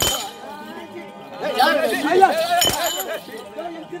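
Metal ankle bells on a street-theatre dancer's feet jingling with sharp stamps, once at the start and again near three seconds, with a man's voice calling out between them.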